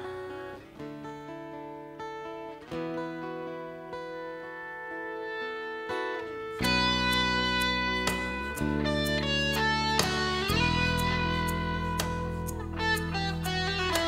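Instrumental break in a rock song: a quiet passage of held guitar and keyboard notes. About six and a half seconds in, the bass and the rest of the band come in and the music grows louder and fuller.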